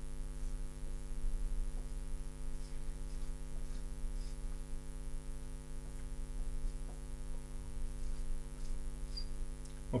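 Steady electrical mains hum, a low drone with a buzzy series of higher tones above it, with a few faint ticks scattered through it.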